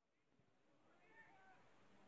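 Near silence as the faint outdoor ambience of the football match fades in, with a faint short pitched call, like a distant shout, about a second in.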